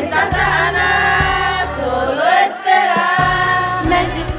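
Song with a group of voices singing held, gliding notes over a bass line. The bass drops out for about a second past the middle, then returns.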